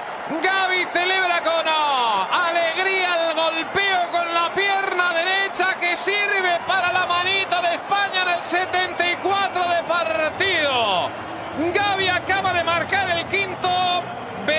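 Excited male football commentary in Spanish, talking fast and loudly without a break, with long falling shouted calls about two seconds in and again near eleven seconds. A faint crowd sits underneath.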